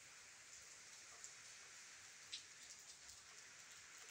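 Light rain falling on leaves: a faint, even hiss with scattered drops ticking, the sharpest a little over two seconds in.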